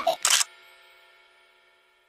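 Camera shutter sound effect: a quick double click in the first half second as the family photo is snapped, followed by a faint ringing tail that fades out within about a second.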